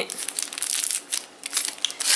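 Plastic packaging crinkling and rustling in irregular bursts, with small clicks, as makeup brushes are handled.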